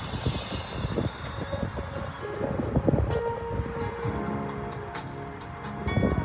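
Live church band music starting up: keyboard chords held as steady tones come in about three seconds in, over an irregular low rumble.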